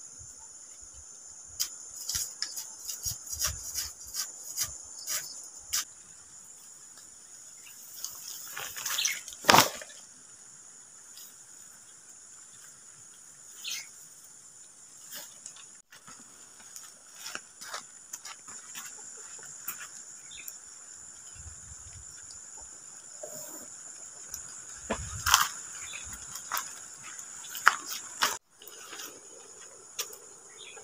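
Insects chirring steadily at a high pitch, with scattered rustles and crackles of dry cut grass being handled and pressed into a plastic basin; the loudest rustle comes about nine to ten seconds in.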